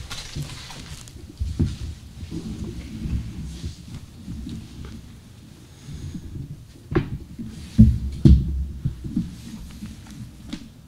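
Table-top handling noise picked up by the table microphones: scattered soft low thumps and a few sharper knocks, the loudest about eight seconds in.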